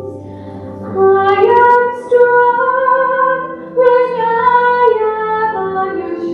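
A woman singing a slow song in long held notes over a soft, steady low accompaniment. The voice comes in about a second in and takes a brief pause near the four-second mark.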